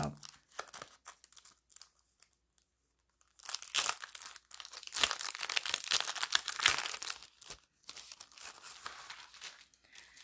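Clear plastic cello sleeve crinkling and crackling as it is opened and a plastic spider-web cutout is worked out of it, in irregular bursts with a short quiet pause in the first half.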